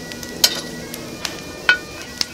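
Metal lid lifter clinking against the lid of a cast-iron Dutch oven heaped with hot coals, two sharp clinks, about half a second in and near the end, as the lid is turned so the biscuits bake evenly.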